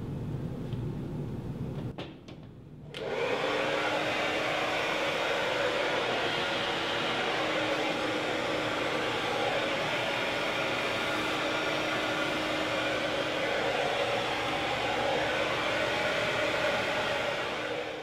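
Handheld hair dryer running steadily on high, blowing through long hair wrapped on a round brush: an even rush of air over a faint steady motor hum. It comes on about three seconds in.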